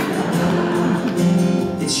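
Acoustic guitar strummed in a steady chord pattern, with a short laugh from the player near the end.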